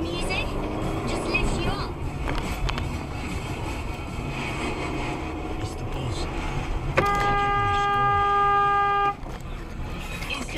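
Car horn sounding once, held steady for about two seconds and cut off sharply, about seven seconds in, over the steady road and engine noise heard inside a moving car.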